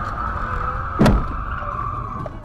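Car tyres skidding with a steady high squeal, and a single heavy crash impact about a second in as the vehicles collide.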